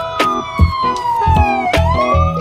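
A siren wailing, its pitch falling slowly and then turning upward again near the end, over background music with a steady beat.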